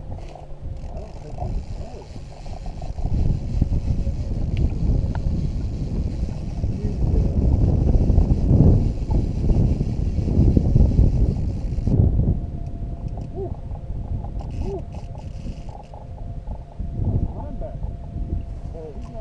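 Wind buffeting the camera microphone in gusts, a loud low rumble that swells and fades, with indistinct voices underneath.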